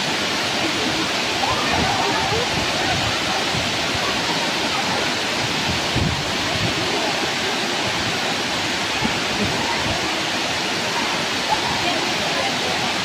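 A wide curtain of many small waterfalls pouring down a cliff face into a pool, making a steady, unbroken rush of falling and splashing water.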